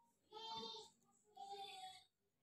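Near silence, broken by two faint, short, high-pitched notes from a distant voice, each about half a second long.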